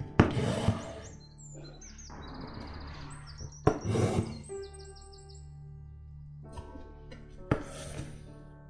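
Embroidery floss being drawn through taut linen fabric in a hoop as satin stitches are made: four short rasping pulls, one near the start, a longer one around two to three seconds in, one about four seconds in and one near the end. Soft background music with sustained notes plays underneath, with a few high chirps in the middle.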